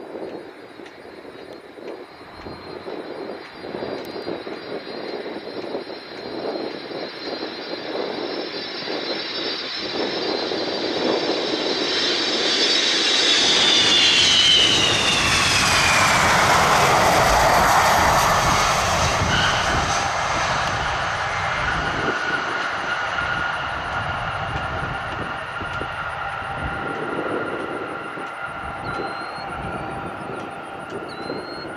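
Boeing KC-135R Stratotanker's four CFM56 (F108) turbofan engines as the tanker flies low past on landing approach. The jet noise grows louder with a high whine that drops in pitch as the aircraft passes, about halfway through, then fades as it rolls away down the runway.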